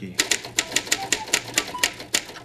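Typewriter keys struck in a quick, steady run of sharp clacks, about seven strokes a second.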